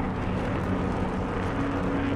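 Steady rushing roar of a missile's rocket motor burning in flight.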